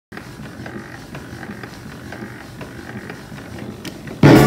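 Wurlitzer 145B band organ's belt-driven drive mechanism running without playing, a steady mechanical creaking with faint clicks about twice a second.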